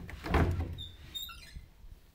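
Sliding closet door pulled open by its recessed handle: a low rumbling knock about half a second in, followed by faint high squeaks as it runs.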